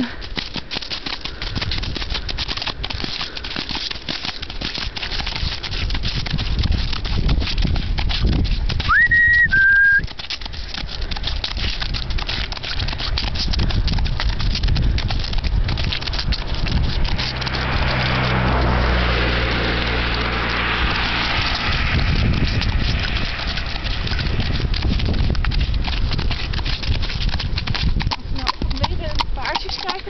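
A Fjord horse's hoofbeats at a trot over steady outdoor noise, while a car approaches and passes, swelling and fading between about 17 and 22 seconds in. A brief high two-note tone sounds about nine seconds in.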